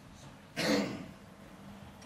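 A man clears his throat once, briefly, about half a second in.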